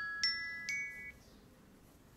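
A short melody of bell-like struck notes, glockenspiel- or chime-like: two notes about a quarter and three quarters of a second in, each ringing on and dying away by about a second.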